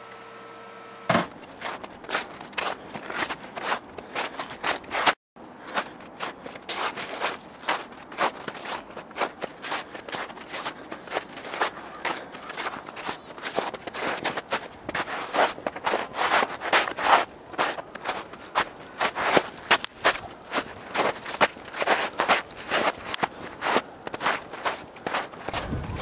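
Footsteps crunching through snow, a continuous run of quick steps, after about a second of steady room hum at the start.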